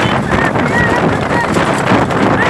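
Racing horse galloping on a tarmac road while pulling a cart, its hooves clattering under loud wind noise on the microphone. Short shouts break in a few times.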